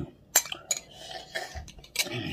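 A spoon clicking a few times against a plastic cereal bowl as cereal and milk are scooped up from the tilted bowl.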